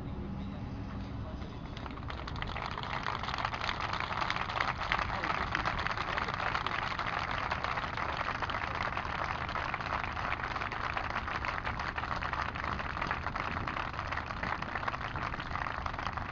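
A large crowd applauding. The clapping swells in about two seconds in and then holds steady, over a low rumble of passing motorway traffic.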